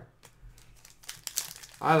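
Foil trading-card pack wrapper crinkling in the hands as it is gripped and worked open, quiet at first and growing busier after about a second.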